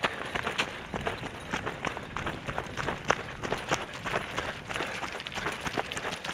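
Running footsteps of a person jogging over leaf-littered grass and dirt: a quick, uneven run of short thuds and rustles.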